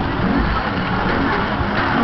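Mack Musik Express ride running at speed, heard from on board: a continuous low rumble and rushing noise from the ride, with music playing under it.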